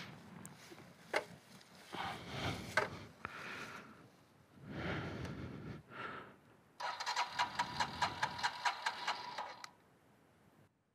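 Royal Enfield Himalayan's electric starter cranking its single-cylinder engine for about three seconds near the end, a steady whine with quick regular pulses that stops abruptly without the engine catching. The bike has cut out and won't restart, which the rider suspects is a loose connector. Before that, rustling and handling noises as the rider moves about and gets back on the bike.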